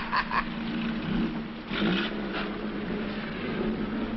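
A vehicle engine running steadily with a low hum, and a short louder sound about two seconds in.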